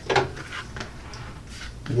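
Faint clicks and light rubbing from a heavy-duty guillotine paper cutter as its presser-foot clamp is wound up and the cut notepad is lifted out.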